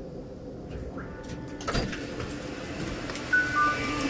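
Train carriage doors opening at a station: a brief high beeping, then a knock as the doors open and louder station noise comes in. Near the end a two-note chime, the second note lower.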